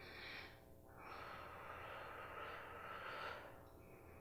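A woman breathing with effort while pulsing her leg in a Pilates exercise, faint: a short breath at the start, then a longer one from about a second in until about three and a half seconds.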